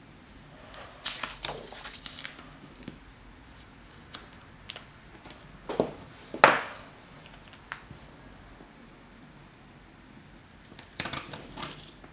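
Paper and tape being handled on a desk: scattered soft rustles and taps of planner pages, a louder swish about six and a half seconds in, and a burst of crackling near the end as washi tape is unrolled from its roll along the page.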